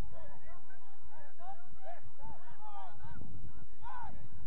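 A flock of birds calling in a chorus of short, overlapping arched calls, over a low wind rumble on the microphone, with one louder call near the end.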